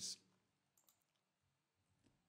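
Near silence: the last of a spoken word trails off at the very start, then a single faint click about a second in.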